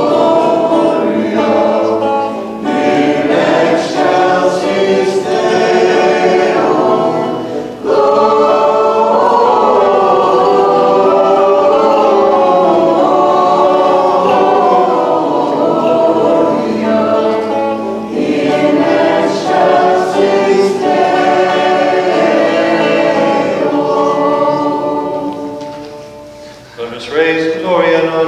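Choir singing a liturgical hymn in phrases with brief pauses between them, fading out near the end.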